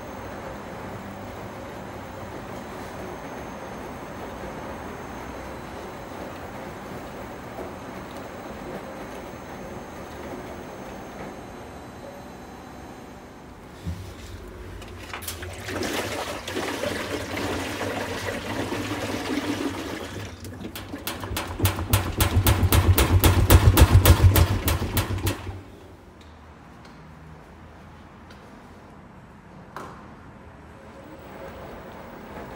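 Laundrette front-loading washing machine tumbling a load of laundry, with a steady wash-and-slosh noise. About halfway through, a louder rumble from an empty stainless-steel drum turning sets in. It builds into a fast, regular rattle of about five knocks a second, then cuts off suddenly, leaving a quieter hum.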